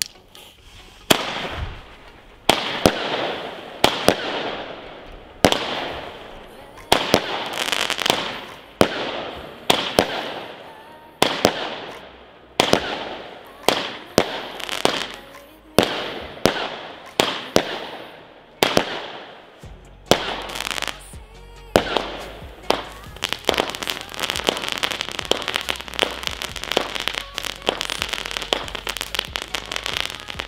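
WECO Barracuda 50-shot firework battery firing. Single shots come about every second and a half, each a sharp bang followed by a decaying crackling tail. From about twenty seconds in, the shots come faster and run together in a dense string of bangs and crackle.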